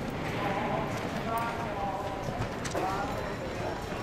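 Voices talking over a steady outdoor bustle, with hard footsteps knocking on wooden boardwalk planks.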